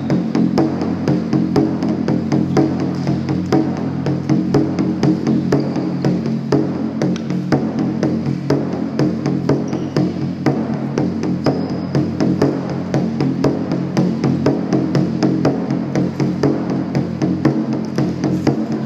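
Lion dance percussion: a drum beating fast in a steady rhythm with cymbals clashing along, several strikes a second.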